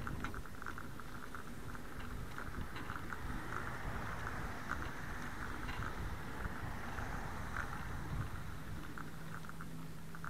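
Steady wind and rolling noise from a bicycle being ridden along a sidewalk, with light irregular clicks and rattles from the bike. A low steady hum joins near the end.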